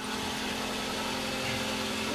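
A steady mechanical hum with a constant low tone that does not change.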